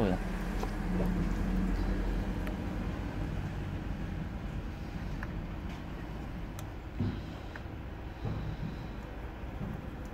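Steady low outdoor background rumble with a low hum that fades out after about two and a half seconds, and two small knocks later on.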